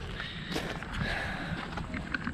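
Footsteps on a gravel yard.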